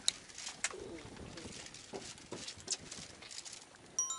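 Faint scattered clicks and rustling from fishing tackle being handled while a rig is prepared, with a few sharper ticks, one right at the start and others about two thirds of a second and two and a half seconds in.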